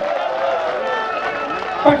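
A man's amplified voice holding one long drawn-out vowel for nearly two seconds at steady loudness, ending just before normal speech resumes.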